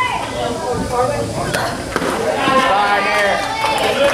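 Several voices of players and spectators shouting and cheering, overlapping, with one sharp smack about a second and a half in, from a pitched softball meeting bat or glove.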